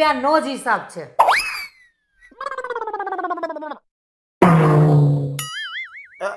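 Edited-in cartoon comedy sound effects: a quick whistle-like glide up and then down, a falling warbling tone, a loud blast, and a wobbling boing near the end.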